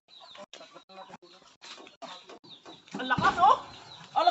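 Chickens clucking: a run of short, faint clucks, then a louder, longer call about three seconds in.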